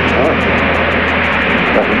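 Steady hiss and rumble of an open air-to-ground radio channel from the X-31 test flight, carrying cockpit noise, with a faint voice under it.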